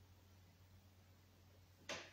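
Near silence: room tone with a faint steady low hum, broken just before the end by one brief sharp noise.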